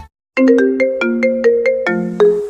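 A phone ringtone remix melody starting after a brief silence: short bright notes, about four or five a second, over longer held lower notes.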